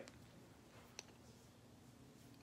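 Near silence: room tone, with one short, faint click about a second in.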